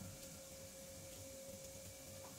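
A faint, steady hum on one high tone over a low hiss, with a few faint ticks.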